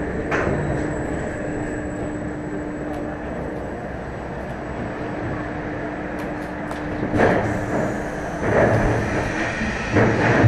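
B&M floorless roller coaster train rolling slowly through its station, a steady mechanical rumble with a faint constant hum. Louder knocks and rattles come about seven seconds in and again about a second and a half later.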